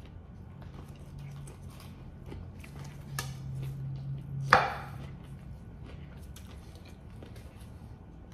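Close-up chewing of a sandwich, with small wet mouth clicks and a low hummed "mmm" for a few seconds. About four and a half seconds in, a sharp clack as a ceramic plate is set down on a wooden cutting board.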